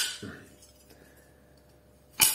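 A single light metallic clink of handled alternator parts right at the start, ringing briefly and dying away, then only quiet room tone.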